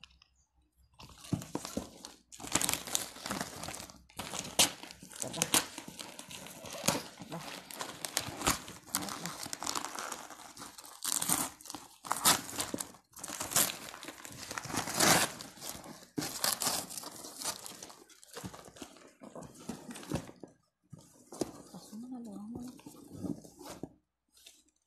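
Gift wrapping paper and plastic being torn and crumpled by hand as a present is unwrapped: irregular rustling, crinkling and ripping with short pauses. A brief hum of a voice near the end.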